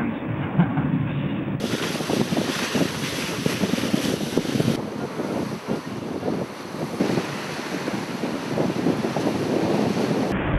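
Wind on the microphone and rushing water aboard the IMOCA Open 60 racing yacht Ecover 3 under sail at sea. The sound changes abruptly at cuts about one and a half seconds and about five seconds in.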